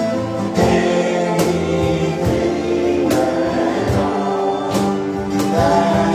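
A man singing a worship song live, accompanying himself on a strummed acoustic guitar, with held keyboard chords underneath.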